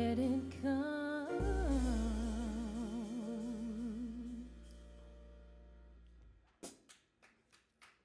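A jazz quartet ends a song. A singer holds a final note with a wide vibrato over sustained upright bass notes and the band. The sound dies away over a few seconds, then a few scattered claps come near the end.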